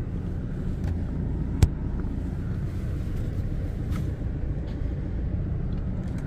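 Steady low rumble of a car driving slowly, heard from inside the cabin, with one sharp click about a second and a half in.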